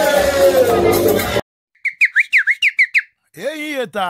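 Live band music with a man singing into a microphone, cut off suddenly about a second and a half in. After a short silence comes a quick run of about seven short, high, falling whistle notes, then a voice near the end.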